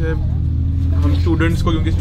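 Steady low rumble of a bus heard from inside its passenger cabin, with voices talking over it.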